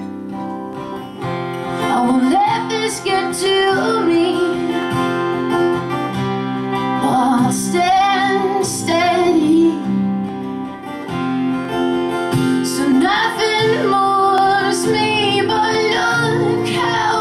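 A woman singing over a strummed acoustic guitar in a live solo performance, her voice held in long, wavering notes above the steady guitar chords.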